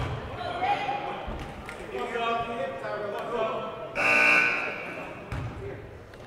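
Voices of people in the gym calling out, with one loud, high, held shout about four seconds in, and a few dull knocks, likely a basketball bouncing on the hardwood floor.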